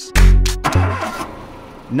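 A car engine starting and revving, used as a transition effect between sections. It is a loud burst about a quarter second in that fades away over the next second and a half.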